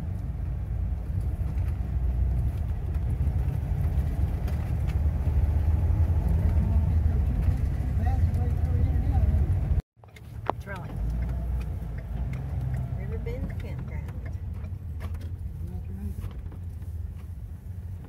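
Steady low rumble of road and engine noise inside a moving vehicle, growing louder over the first half. It breaks off for a moment about halfway through and then goes on a little quieter, with faint voices underneath.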